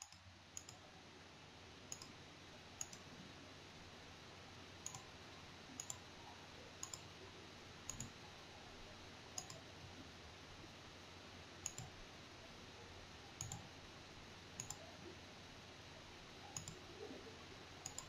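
Faint computer mouse clicks, about a dozen, irregularly spaced a second or two apart, over a low steady hiss.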